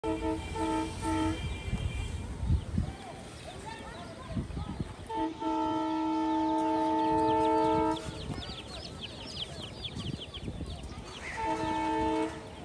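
Train horn: three short blasts, then one long steady blast of about three seconds, then another blast starting near the end. Quick bird chirps come between the blasts.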